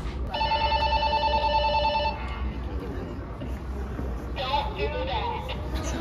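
A steady, slightly warbling two-note electronic tone sounds for about two seconds just after the start, over a low hall rumble. Voices from the watching crowd rise near the end.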